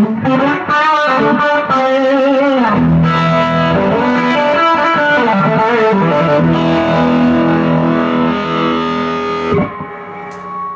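Electric guitar played through a Strymon Deco tape-saturation and echo pedal into a small Vox amp. A run of single notes with a wavering pitch comes first, then sustained chords from about three seconds in, which ring until they drop away shortly before the end.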